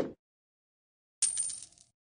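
Video end-card sound effects: a short pop rising in pitch at the start, then about a second later a bright, ringing coin-like chime lasting about half a second as the like, coin and favourite icons light up.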